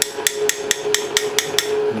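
Quick, light metallic taps, about five a second, of a steel tool striking a knife's brass guard to drive it off the tang. A steady hum runs underneath.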